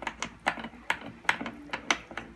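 Spoon stirring in an enamel mug, clinking against the side in about seven sharp, irregular clicks, as soup powder is dissolved in water to keep it from going lumpy.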